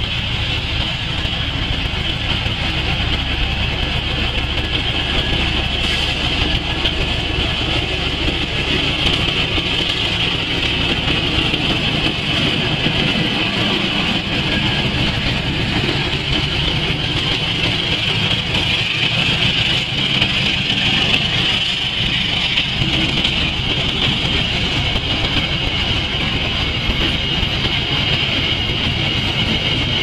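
Passenger train hauled by a CC 206 diesel-electric locomotive passing close by: steady running noise of the engine and of the coaches' wheels on the rails, holding at one loud level.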